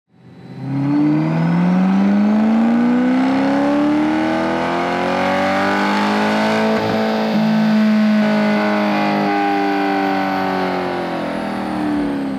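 C8 Corvette's 6.2-litre LT2 V8, breathing through equal-length headers and a cat-back exhaust, making a loud full-throttle pull on a chassis dyno. The revs climb steadily for about five seconds and hold near the top, then fall away gradually from about nine seconds in as the run ends.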